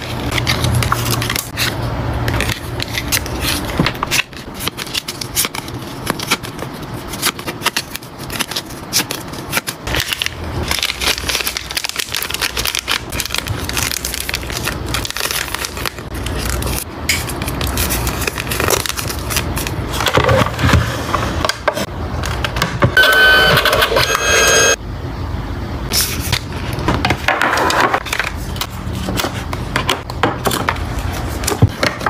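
Photocards and plastic sleeves handled close to the microphone: crinkling, rustling, tapping and scraping of plastic and card, with a brief steady-pitched squeak about two thirds of the way through.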